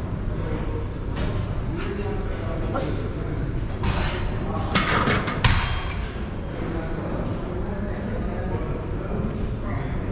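Gym room noise with indistinct voices, and scattered metallic clinks and knocks from a lat pulldown machine's weight stack. A sharp clank comes about five and a half seconds in, as the plates are set down at the end of the set.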